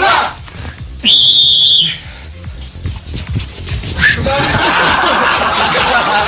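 A whistle blown in one long, steady, high blast lasting about a second, then a studio audience laughing from about four seconds in.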